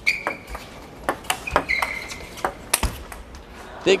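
Table tennis rally: the ball clicks sharply off bats and table in quick, irregular succession, with short squeaks of players' shoes on the court floor.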